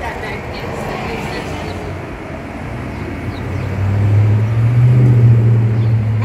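Low engine rumble of a passing vehicle over street noise, swelling to its loudest about five seconds in.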